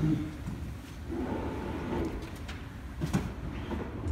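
A large wooden staircase being shifted and lifted by hand over plywood and mats on the floor: a low rumble of handling, with a couple of light knocks in the second half.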